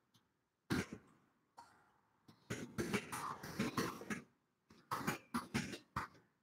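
Typing on a laptop keyboard close to its built-in microphone: irregular runs of keystrokes about a second in, through the middle and near the end, with short pauses between.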